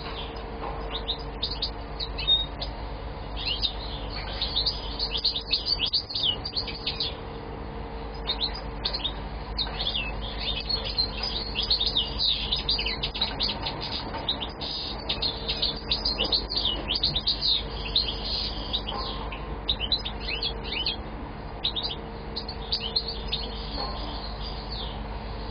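European goldfinch (Moroccan chardonneret) singing a rapid, twittering song in long runs, pausing briefly about seven seconds in and again near the end, over a steady low hum.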